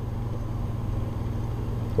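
Steady low hum with faint hiss: the background noise of the narration recording, heard in a pause between sentences.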